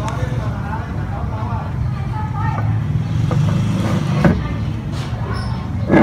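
A steady low machine hum, the meat grinder's motor running, with a few sharp metal clinks from the grinder's plate, the loudest right at the end.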